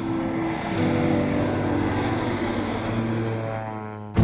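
Single-engine floatplane's propeller engine droning steadily as it lifts off and climbs away, fading over the last second.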